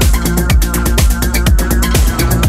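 Melodic progressive electronic dance music in a DJ mix: a steady kick drum about twice a second under a deep held bass, sustained synth chords and fast ticking hi-hats.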